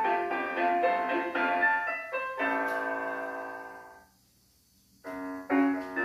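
Piano music: a phrase of single notes ends on a held chord that fades away, and after about a second of silence a new piano phrase begins with short repeated notes.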